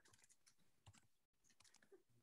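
Faint computer keyboard typing: a quick, uneven run of key clicks as text is entered.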